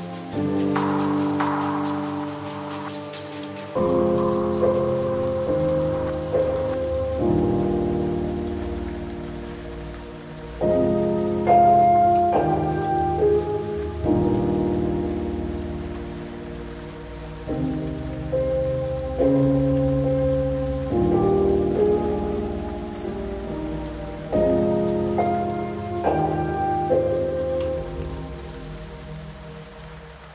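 Soft, slow piano chords, a new one struck every few seconds and left to fade, over a steady background of rain.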